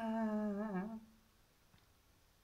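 A man's voice holding one long steady note, a drawn-out "aah", that wavers and stops a little under a second in.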